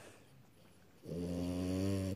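French bulldog snoring once, a steady low snore about a second long that starts halfway in.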